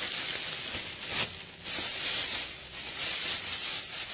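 Thin plastic bags rustling and crinkling as hands work inside them, a continuous crackle with louder surges about a second in and around two seconds.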